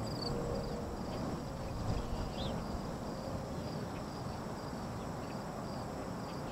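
Outdoor ambience of insects chirping in an even repeating rhythm, about two short high chirps a second, over a low steady background rush.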